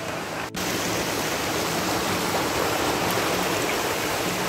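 Steady rush of stream water running over rocks into a rock pool. It starts abruptly about half a second in and holds even.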